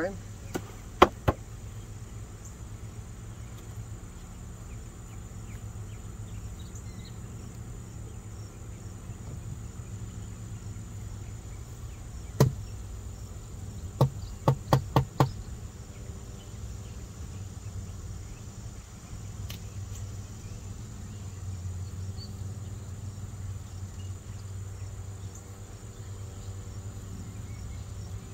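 Wooden beehive parts knocked together: a couple of sharp knocks about a second in, another about halfway through, then a quick run of four or five. Under them a steady high insect trill and a low hum.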